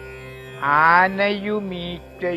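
A voice chanting a line of Malayalam verse in a sing-song melody. After a quiet first half-second it holds one long, slightly wavering note, fading just before the end.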